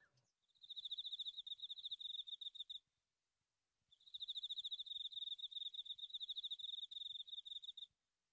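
Cricket chirping in a high, rapidly pulsed trill, in two bouts: about two seconds, a pause of about a second, then about four seconds.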